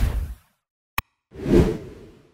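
Animated whoosh sound effects with a single sharp mouse-click effect between them. A whoosh fades out in the first half second, the click comes about a second in, and a second whoosh swells and fades away.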